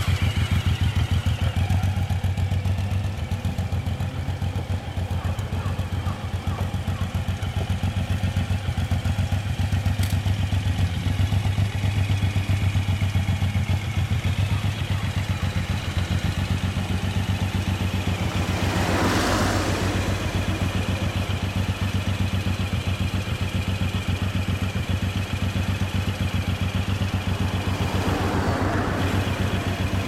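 Suzuki Boulevard M109R's 1,783 cc V-twin idling steadily. A car passes about two-thirds of the way through, its noise swelling and fading over the idle.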